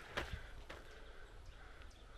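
Quiet outdoor ambience: a steady low rumble with a couple of faint short crackles in the first second.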